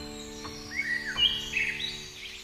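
The held notes of a piano piece fading out, with a few short bird chirps laid over the quiet between pieces.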